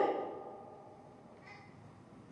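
The last syllable of a man's preaching voice, falling in pitch and dying away in the church's reverberation, then quiet room tone with one faint short sound about a second and a half in.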